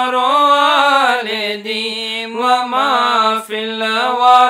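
A single voice chanting a verse of an Arabic qasida in long held notes that waver and glide in pitch, with a brief break about three and a half seconds in.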